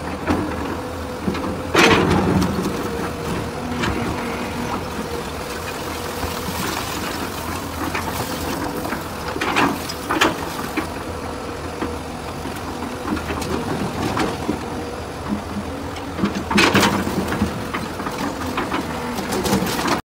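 Hyundai crawler excavator's diesel engine running steadily while it loads brick demolition rubble into a steel dump-truck bed. Loud crashes of falling rubble come about 2 seconds in, twice around 10 seconds, and near 17 seconds.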